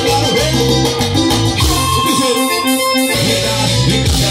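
Live band music with keyboard, bass and percussion playing without vocals. About two seconds in, the bass and drums drop out for about a second, leaving the keyboard line, then the full band comes back in.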